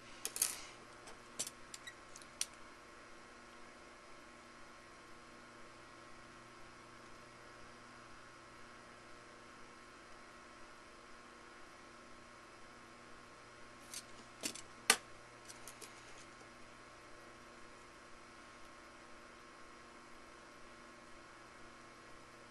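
Small metal clicks and scrapes as digital calipers slide and touch the metal bottom cap of the probe while set-screw height is measured: a cluster of clicks in the first couple of seconds and another about 14 to 16 seconds in. A faint steady hum lies underneath.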